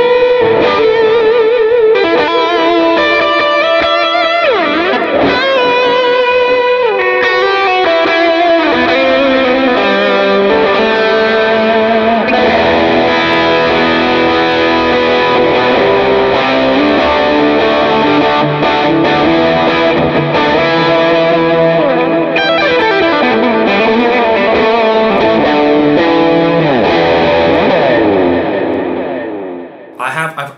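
PRS SE Hollowbody II Piezo hollow-body electric guitar played through its magnetic pickups into a Line 6 Helix modeler: a lead line with held, bent notes. It rings out and fades away near the end.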